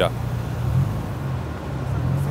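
A vehicle engine idling, a steady low hum over the general noise of an outdoor parking area.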